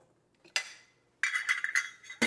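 A single metal clink on a stainless steel mixing bowl about half a second in, fading out, then a short run of metal scraping and rattling in the bowl near the end.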